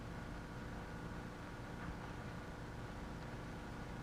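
Low, steady machinery hum with a few faint steady tones, unchanging throughout.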